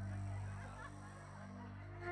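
A low, steady held tone through the stage sound system, like a sustained bass or keyboard note, softening about halfway through, with faint scattered sound from the room above it.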